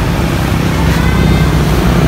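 Steady low rumble of a motor vehicle's engine running.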